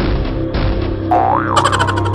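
Background music with a cartoon 'boing' sound effect a little after a second in, a quick springy pitch glide up and back down. A brighter tune with quick repeated notes takes over near the end.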